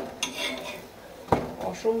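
A metal spatula scrapes and knocks against an iron tawa as a paratha is pressed and moved on it: a click at the start, a short scrape, then a sharp clank a little over a second in.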